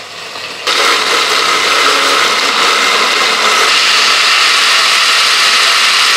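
Countertop blender blending a smoothie of fruit and greens, a steady loud whir that steps up to full loudness under a second in as the contents break down.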